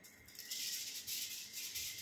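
Spray hissing onto hair in a quick run of short, uneven bursts, starting about half a second in and lasting about a second and a half.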